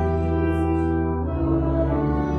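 A church hymn: held organ chords with voices singing along, the chord changing about two-thirds of the way through.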